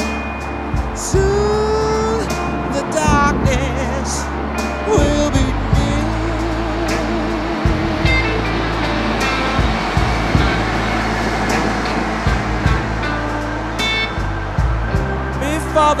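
Background band music: a song with a steady bass line and bending, gliding lead lines.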